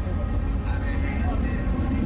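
A car's engine and exhaust rumbling low and steady as it rolls past, with people's voices in the background.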